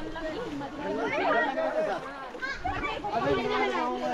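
Voices talking and chattering, with no other sound standing out.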